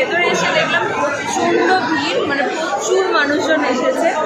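Crowd chatter: many people talking at once in a large, busy indoor hall.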